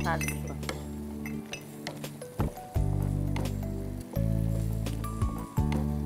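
Background music of held low notes that change every second or so, over light clinks and knocks of a cooking utensil against a frying pan as pasta is tossed in it.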